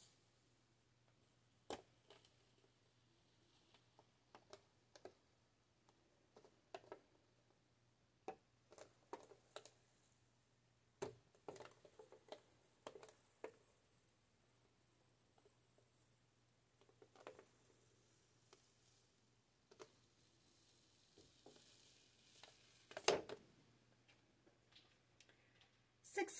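Faint, scattered clicks and crackles of a thin plastic stencil sheet being handled and peeled off a painted canvas, the loudest cluster near the end, over a faint steady low hum.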